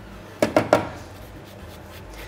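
A lemon being zested on a microplane: two short rasping strokes of the rind across the blade about half a second in.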